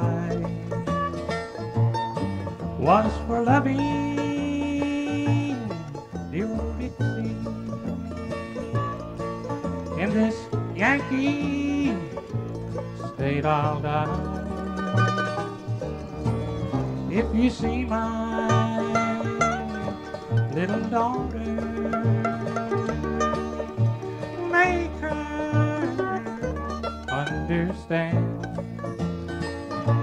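Live bluegrass band of banjo, mandolin, fiddle, guitar and bass playing an instrumental break between sung verses, with a walking bass line under the plucked lead.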